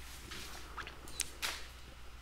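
Faint computer mouse clicks, two sharp ones a little over a second in, over a low steady hum.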